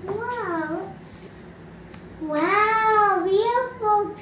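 A young girl's wordless voice: a short rising-and-falling 'ooh' at the start, then a longer, wavering sung or hummed note from about halfway through.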